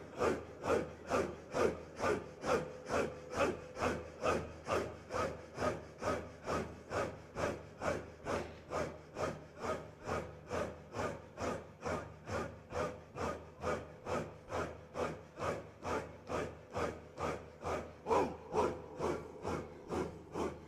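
A circle of men doing a rhythmic breath zikr in unison, each throaty, rasping exhalation a little over two a second, with a faint held tone beneath.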